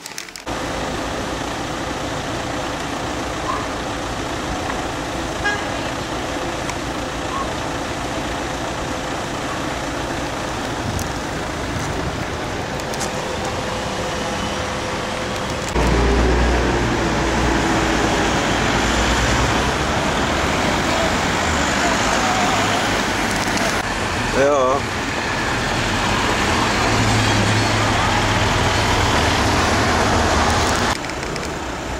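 Street traffic noise, a steady hum of road vehicles. About halfway through it grows louder, with a heavier engine rumble, and a short wavering tone sounds near the end.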